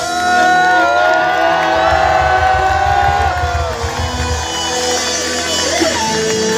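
Live band playing loudly through a PA system, with a crowd cheering and whooping over it in many overlapping voices.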